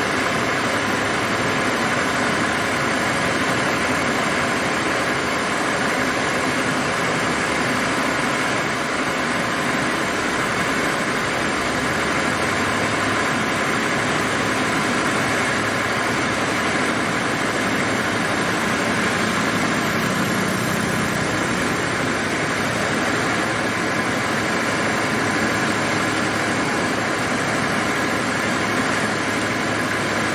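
Engine of a truck-mounted hydraulic crane running steadily while the crane lifts a car, an even noise with no breaks.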